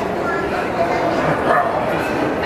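Indistinct voices and chatter of people, children among them, with a few short high-pitched vocal sounds.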